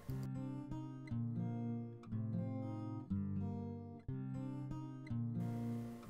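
Background music: acoustic guitar playing slow chords, a new chord about once a second.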